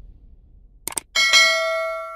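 Two quick mouse-click sound effects, then a bright bell chime that rings on and slowly fades: the sound effect of a notification bell being switched on after a subscribe button is clicked.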